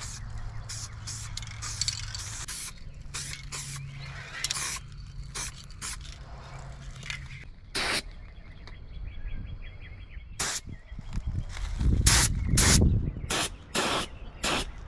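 Paint spraying in short hissing bursts: first an aerosol can of adhesion promoter, then a compressed-air gravity-feed spray gun laying primer sealer. A louder low rumble comes near the end.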